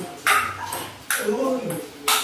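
Table tennis ball struck back and forth in a rally: two sharp clicks of ball on paddle and table, about a second apart.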